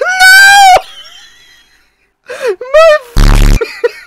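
A loud, high-pitched voice held as a cry for about half a second, fading away. After a short pause there is a brief voiced sound and then, about three seconds in, a harsh buzz lasting half a second.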